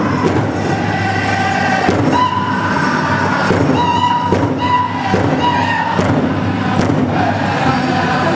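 Powwow drum group song: high-pitched held notes from the singers over the steady beat of a large shared hand drum.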